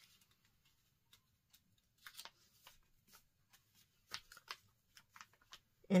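Faint rustling and a few light taps of a paper scallop template being shifted and pressed flat against a quilt's fabric border, in short scattered bursts.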